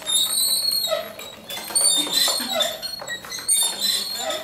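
Wooden gear-driven automaton turning, its gears and jointed wooden figures giving off a run of short, irregular squeaks and creaks.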